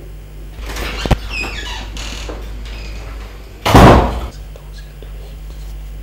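A door is shut with a loud thump just before four seconds in, after a sharp click about a second in.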